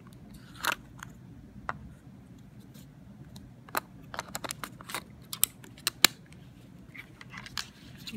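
Sharp little plastic clicks and scrapes from a Canon Rebel XS camera body being handled as its battery pack is slid out of the battery slot. There are a few isolated clicks early on and a quick cluster of them from about the middle to near the end.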